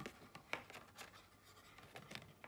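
Faint handling of an oracle card and its paperback guidebook: a few light taps and rustles of card and paper, spaced about half a second apart.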